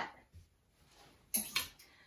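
Quiet room, then about a second and a half in, a brief rustle and a couple of short clicks: a wire hanger and a cotton dress being hung on a metal clothes rack.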